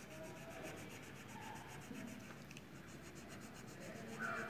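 Green crayon rubbing on a colouring-book page in quick back-and-forth strokes, faint and scratchy.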